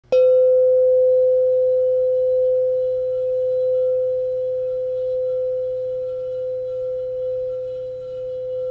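The Awakening Bell, a metal tone bar, struck once and left to ring: one clear, pure tone with faint higher overtones that fades very slowly and is still sounding at the end.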